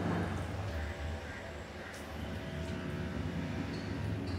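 Steady low machine hum with a faint hiss over it, and a light scrape of a spatula in the kadai at the very start.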